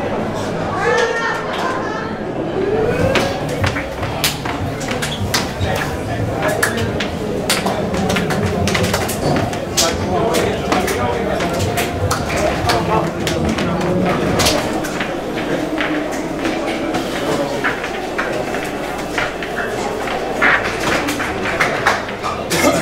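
Several people talking at once, with frequent sharp clicks and knocks throughout.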